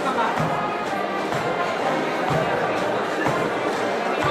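A band playing a march, a bass drum beat about once a second, with spectators chattering over it.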